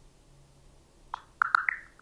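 ChatGPT voice-mode app playing its processing sound: a quick cluster of soft, bubbly blips about a second in, trailing off in fainter echoes, while it works on the requested image. Before that, only quiet room tone.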